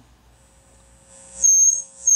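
Dual 1229 turntable's output through the amplifier and speakers: a faint hum, then a loud, steady high-pitched squeal about one and a half seconds in that drops out for a moment and comes back. The squeal is feedback or a grounding fault, as the owner puts it.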